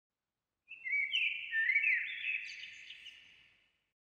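Birds chirping: a short run of high, overlapping whistled notes with quick rising and falling slides, starting just under a second in and fading out at about three seconds.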